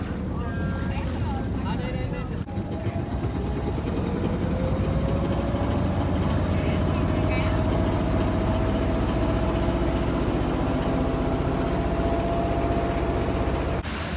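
Motor boat engine running steadily, its pitch climbing over the first few seconds as the boat picks up speed, then holding. Voices are heard over it.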